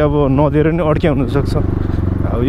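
A man talking over the steady drone of a dirt bike engine running as he rides.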